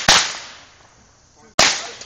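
The last firecrackers of a string going off: one sharp bang just after the start and a final one about a second and a half later, each fading over about half a second.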